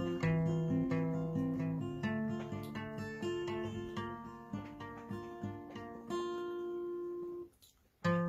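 Acoustic guitar with a capo playing an instrumental intro of chords and ringing notes, fading gradually and ending on a held chord that cuts off suddenly near the end.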